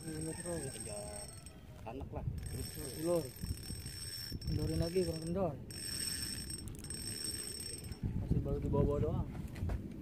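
Indistinct voices in several short spells over a steady low rumble, with a thin high-pitched whine that comes and goes.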